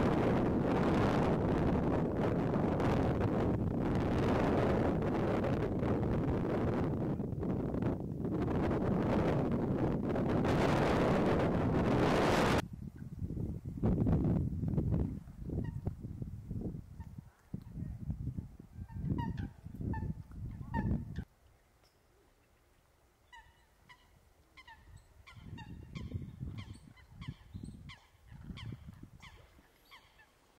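Strong wind rumbling on the microphone, cutting off abruptly about twelve seconds in and followed by a few more gusts. Over the last third, a run of faint, short honking bird calls comes in quick succession.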